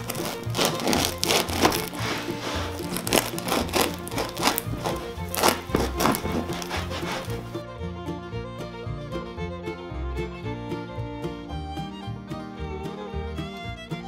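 Serrated bread knife sawing through the crisp crust of a homemade loaf: a rapid series of crackles over background music. The crackling stops about halfway through, leaving only the music.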